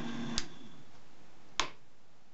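A home-built electric cylinder phonograph is switched off: its switch clicks about half a second in and the machine's steady hum cuts out with it. A second sharp click follows about a second later.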